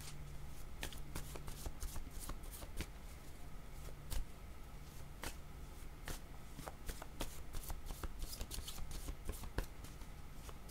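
A deck of divination cards being shuffled by hand: a quiet, irregular run of short card clicks.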